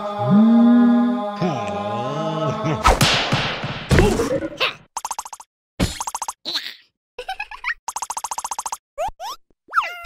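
Wordless cartoon vocal sound and comic sound effects. A character's long, wavering wail sounds over a steady chant-like drone, then a noisy crash comes about three seconds in. After it come short buzzy comic effects with gaps between them, ending in quick sliding boings.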